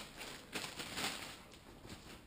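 Faint rustling of packaging being handled while a sticker is peeled off a wrapped parcel item, loudest in the first half.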